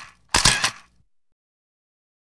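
Camera shutter sound effect: a short snap about a third of a second in, following the tail of another just before it.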